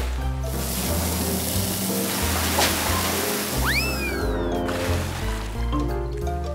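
Cartoon water-spray sound effect, a hiss lasting about four seconds, over bouncy background music. Near the end of the spray a whistle swoops up and then slides slowly down.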